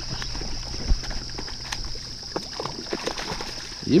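Light splashing in shallow marsh water as a traíra strikes at a surface lure, with a few short sharp ticks. A steady high insect buzz runs underneath.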